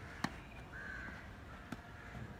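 Tennis ball struck by a racket in a rally: a sharp, loud pock about a quarter second in, then a fainter pock from farther off near the end.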